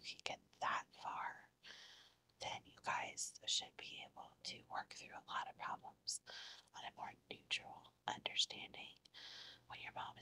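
A woman whispering steadily in soft, breathy speech.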